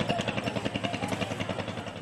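An engine running steadily with a fast, even chugging beat, about a dozen pulses a second.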